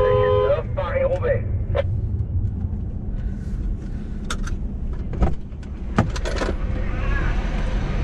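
Low steady rumble inside a slowly moving car, with a car horn sounding that stops about half a second in. Through the second half come several sharp clicks and knocks, bunched around five to six and a half seconds in.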